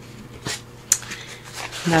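Stiff coffee-dyed paper sheets handled and shuffled by hand: a few short rustles, with one sharper crackle just before a second in.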